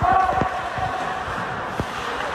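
A spectator's drawn-out shout of 'oh' carries on for about a second, over scattered hollow knocks from sticks, puck and skates in play on the ice.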